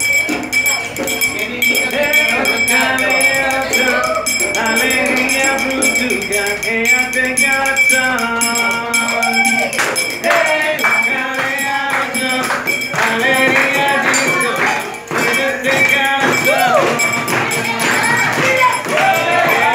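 Homemade maraca made from a small metal can, shaken in a rhythm, with music and singing in the same stretch.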